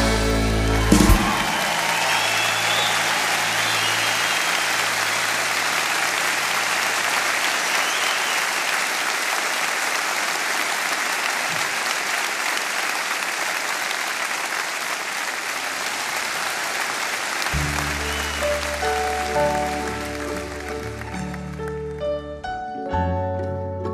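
The band's last chord cuts off about a second in and a large concert audience applauds steadily for some sixteen seconds. Near the end the applause dies away as a quiet instrumental intro of single notes begins.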